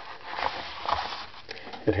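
Rustling handling noise as an M1895 Nagant revolver is moved about and set down on a cloth mat, with a few faint clicks about a second in and again about a second and a half in.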